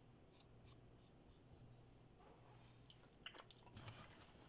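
Near silence: faint room tone with a low steady hum, and a few soft clicks and taps near the end.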